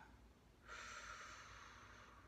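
A faint breath out: a soft hiss of air that starts a little under a second in and lasts about a second and a half.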